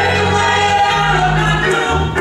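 Small gospel choir singing, with sustained organ notes held underneath.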